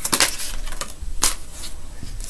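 Tarot cards being handled and shuffled in the hands: a handful of short, sharp card clicks with soft rustling between them.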